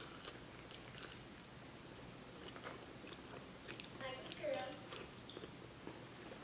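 Faint close-up chewing and biting on a fried chicken wing, with small scattered clicks of the mouth and food. A brief murmur of a voice comes about four seconds in.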